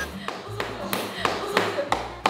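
Background music with a pulsing bass line and sharp tapping percussion, a few taps to the second.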